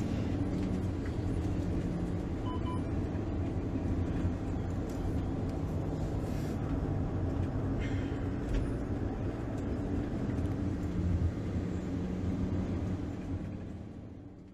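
Steady low rumble of a vehicle's engine heard from inside the cabin, fading out near the end.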